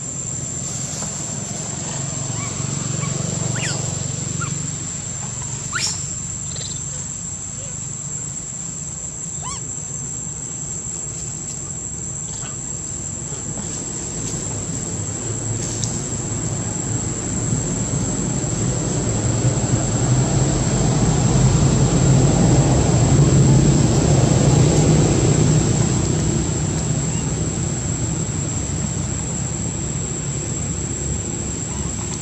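Outdoor ambience: a steady high-pitched insect whine throughout, under a low rumble that swells through the second half, peaks a few seconds before the end and then eases. A few faint short chirps sound in the first half.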